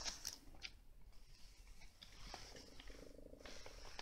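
Near silence: faint room tone with a few small clicks and a brief low buzzing rattle about three seconds in.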